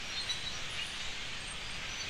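A dense chorus of many birds calling at once, a continuous blur of high chirps and chatter from a flock, over steady outdoor noise.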